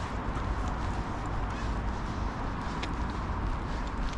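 Footsteps on pavement as a person walks a dog on a leash, over a steady low rumble, with a few faint light ticks.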